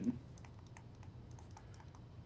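Faint, irregular light taps and clicks of a stylus writing on a tablet screen.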